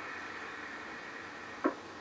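Hiss of an open air-to-ground radio channel, cut off about one and a half seconds in by a sharp click as the channel drops.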